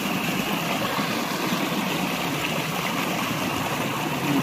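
Water rushing and splashing as a steady flow, pouring through a fine-mesh fishing net held against the current.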